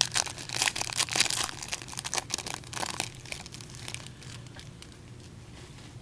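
A trading card pack wrapper being torn open and crinkled by gloved hands: a dense run of crackles through the first three seconds or so, dying away near the end.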